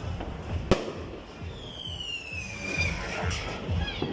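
A single sharp firecracker bang a little under a second in, followed by a whistle that slides down in pitch for about a second and a half. Background music with a steady beat plays underneath.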